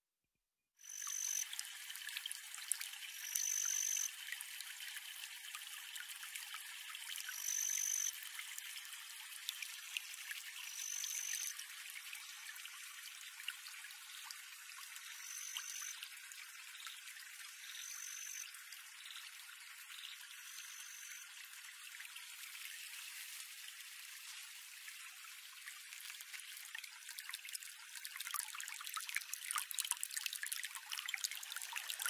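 Silence, then about a second in a quiet trickling, dribbling water sound starts and runs on, thin with no low end. A short high tone sounds every few seconds over it.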